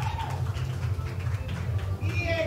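Busy venue ambience: a steady, pulsing low bass hum under a faint murmur of crowd voices.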